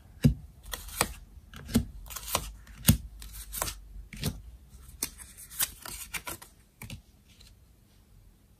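Tarot cards being dealt one after another onto a tabletop spread, each landing with a sharp snap, about two a second. The snaps stop about seven seconds in.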